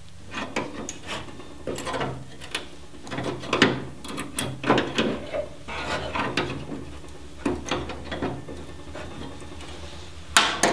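Pliers gripping and bending out the cut lip of a steel Jeep Cherokee XJ rear quarter panel: irregular creaks and clicks of sheet metal and pliers, loudest about three and a half to five seconds in.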